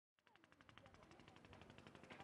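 Near silence, with a faint, rapid, even ticking at about twelve ticks a second, fading in.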